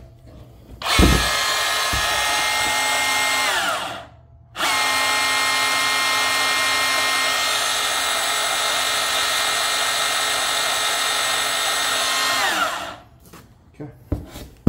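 DeWalt cordless portable band saw running free with a freshly fitted and tensioned blade. The motor whines steadily for about three seconds, then winds down with falling pitch. It is started again for about eight seconds and winds down once more near the end.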